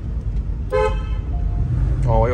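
A single short car-horn toot about three-quarters of a second in, over the steady low rumble of engine and road noise inside a moving car's cabin.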